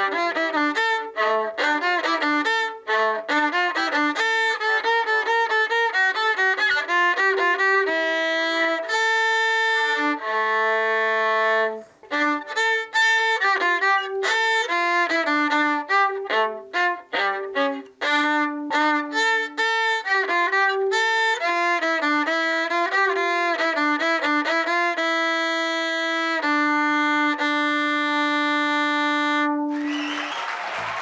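A child playing a gavotte on the viola: lively phrases of quick separate bowed notes with a few longer held ones, closing on a long sustained low note near the end.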